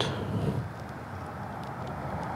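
A steady low hum, with a few faint clicks in the first second as the plastic phone-mount parts are handled.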